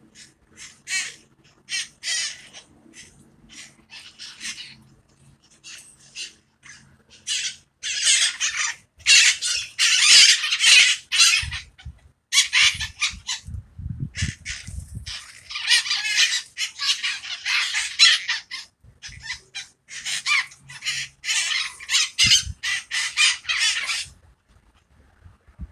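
A flock of wild parakeets giving harsh, screeching squawks. The calls come one at a time at first, then in loud, rapid runs from about a third of the way in and again in the second half.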